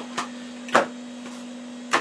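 A steady low hum from the powered bench equipment, broken by three short, sharp clicks. The loudest click comes about three-quarters of a second in.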